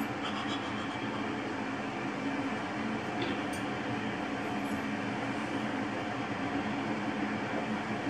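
Electric kettle heating water, a steady rumbling hiss.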